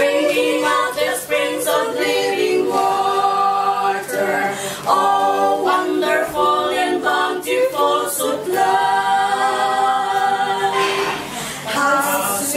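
A women's vocal quartet singing a hymn a cappella, several voices together, phrase after phrase without accompaniment.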